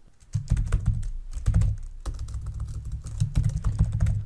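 Computer keyboard typing: a quick, irregular run of keystrokes starting about a third of a second in, each with a soft thump beneath the click.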